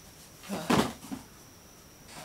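Cardboard packaging being handled, with one sharp thump a little under a second in and a smaller knock just after.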